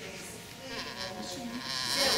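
Indistinct voices in a large hall, not clearly picked up by the microphone, their pitch wavering, with a short hiss near the end.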